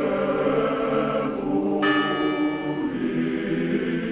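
A choir chanting sustained tones, with a bell struck once a little under two seconds in, its ring dying away over about a second while the chant goes on.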